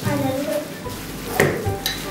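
Metal spoon stirring a thick white mixture in a glass bowl, clinking sharply against the glass twice in the second half, over background music.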